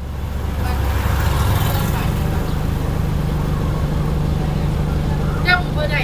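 A motor vehicle's engine running steadily with a low hum, growing louder over the first second and then holding level. A distant voice is faintly heard near the end.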